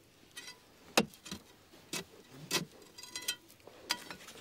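Metal digging tool striking rock and earth in a narrow mine tunnel: about seven sharp knocks at uneven intervals of roughly half a second, some with a brief metallic ring.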